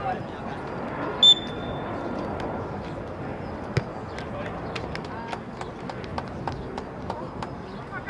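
A referee's whistle gives one short blast about a second in. A few seconds later a soccer ball is kicked with a single sharp thud, as players call out on the field.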